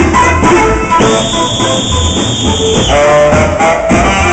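Loud band music with a melody over a steady low beat, the music played for the dance of the giglio. In the middle, a sustained hiss-like layer lasts about two seconds.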